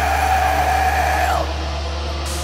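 Heavy metal music: a sustained low chord rings under a single held high note, which drops off about one and a half seconds in while the low chord carries on.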